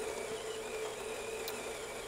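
Terra Kaffe TK-02 super-automatic espresso machine running with a steady mechanical hum as it makes the espresso part of a cortado.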